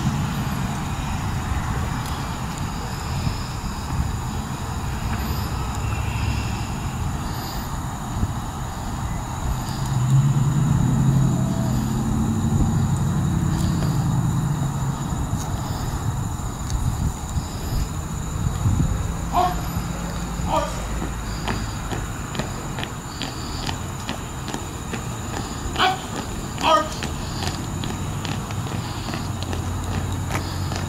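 Outdoor background noise: a steady low rumble, with two pairs of short rising calls in the second half.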